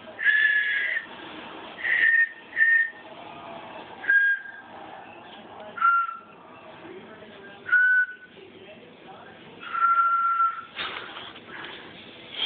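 Musical Christmas whistles, a set of single-note pitched whistles, blown one at a time to pick out a slow tune: seven clear whistled notes of differing pitch, a second or two apart, the last held longest. A short rush of noise follows near the end.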